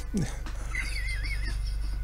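A man's quiet, held-back laugh: a short breathy sound, then a thin, wavering high squeak in the middle, over a steady low hum.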